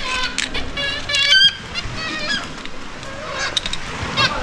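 Black-legged kittiwakes of a nesting colony calling, short nasal calls from several birds in overlapping bursts, the loudest a little over a second in.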